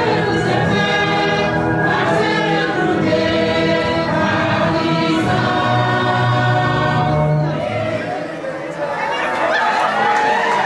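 A large group of people singing together in long held notes; the singing dips briefly about eight seconds in, then picks up again.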